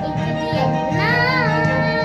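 A young girl singing over instrumental accompaniment, with a sung note that bends up and back down about a second in.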